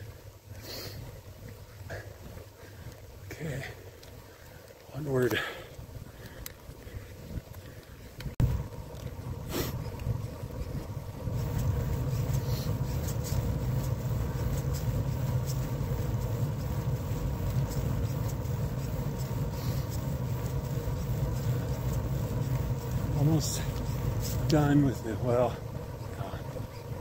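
Steady rolling hum of a bicycle ride, tyre and wind noise on the microphone, which gets louder about eleven seconds in and then holds steady. There are short bits of the rider's voice or breath near the start and the end.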